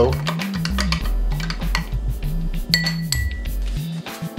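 Background music with a stepping bass line, with a metal spoon clinking against a drinking glass of fiber powder stirred into water.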